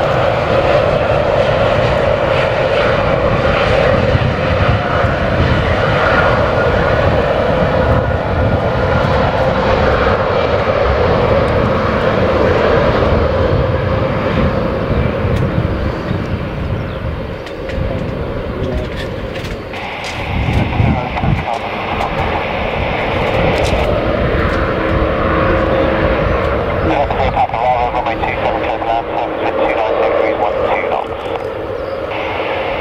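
KLM Embraer 190 airliner's twin GE CF34 turbofans running as it rolls along the runway after landing, with a steady engine tone. The engine sound dips about two-thirds of the way through, then comes back. Strong wind rumbles on the microphone.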